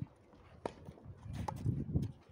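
Tennis ball struck in a rally on a clay court: two sharp knocks, one about two-thirds of a second in and one about a second and a half in, the second with a brief ring of racket strings. Shoes scuff on the clay near the end.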